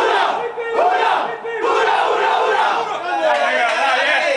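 A football team's pre-match battle cry: many men in a tight huddle shouting together at full voice.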